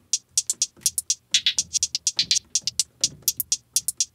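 A hi-hat sample played from an Akai MPC One drum machine in a steady looped pattern of quick, crisp ticks, several a second, some a little louder and some quieter.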